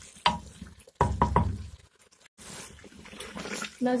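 A spoon knocking and scraping against an aluminium pot while minced meat is stirred and fried in oil: a single knock near the start, then a quick cluster of three or four knocks about a second in.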